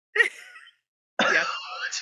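A woman's short burst of laughter, then a brief gap and laughing speech ("Yeah") with breathy chuckling.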